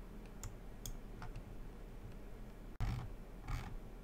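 A few faint computer mouse clicks over a low, steady background hum, with a soft thump and rustle about three seconds in.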